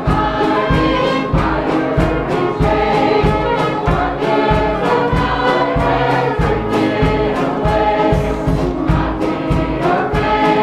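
A church choir singing a gospel song over instrumental backing with a steady beat.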